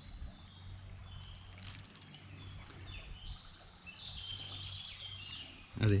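Faint birdsong, scattered chirps with a longer run of song from about three to five seconds in, over a low background of stream water.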